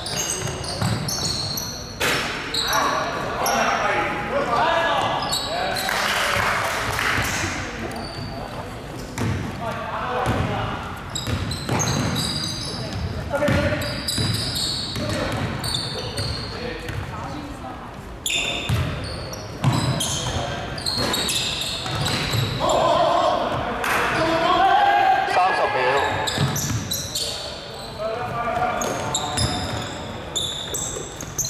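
A basketball being dribbled and bounced on a hardwood court during play, heard as repeated sharp knocks, with players' voices calling out and echoing in a large sports hall.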